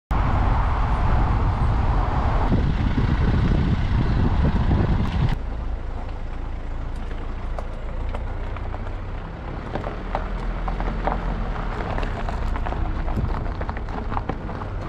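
A car driving, with a steady low rumble and road and wind noise that drop suddenly about five seconds in. It then rolls slowly over gravel, the tyres crunching with many small clicks and pops of stones.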